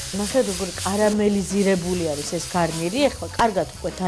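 Steak frying in a pan with cubes of celery root and onion, sizzling steadily, under a woman's voice talking throughout.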